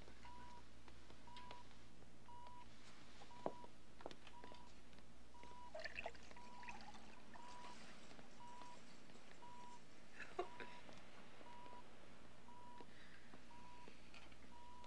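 Bedside patient monitor beeping steadily, one short beep at the same pitch a little more often than once a second, the pulse tone of a heart monitor. A few soft knocks sound over it, about three and a half seconds in, around six seconds and near ten seconds.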